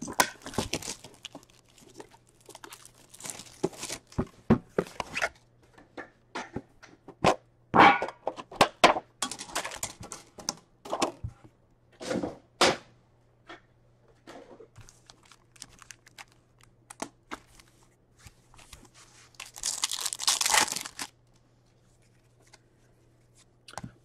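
Plastic wrapping crinkling and tearing, with scattered clicks and taps, as a 2019-20 Upper Deck Series 2 hockey card tin is opened and its packs handled. A longer tearing sound comes near the end.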